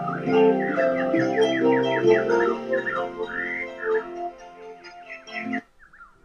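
Playback of a home recording: plucked harp notes ringing on over quick, falling bird chirps, with a bit of hiss. It cuts off abruptly near the end as the recording finishes.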